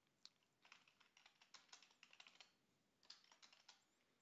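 Faint computer keyboard typing: scattered single keystrokes, with a quicker run of them a little past two seconds in.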